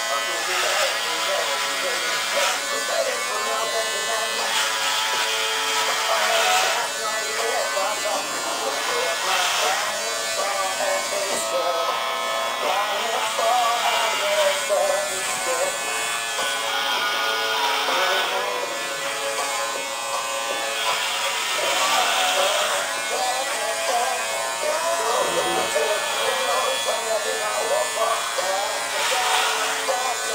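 Electric hair clippers running with a steady buzz as they cut short hair, with voices and music underneath.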